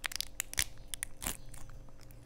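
A small plastic bag crinkling and tearing as it is bitten open by hand and teeth, a quick run of sharp crackles and clicks.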